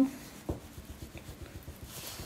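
A makeup brush rubbing over skin with faint scratchy strokes, with one soft click about half a second in.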